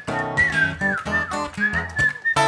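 Acoustic guitar strummed in a steady rhythm while a man whistles the tune into the microphone. The whistle is one high, clear tone that slides down and back up.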